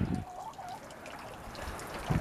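Water trickling steadily from a small fountain spout into a garden koi pond, with a brief soft call about half a second in.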